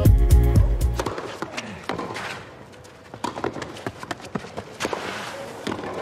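Intro music with a heavy bass cuts off about a second in. A tennis rally on a clay court follows: several sharp racquet strikes on the ball and players' footsteps over a low crowd background.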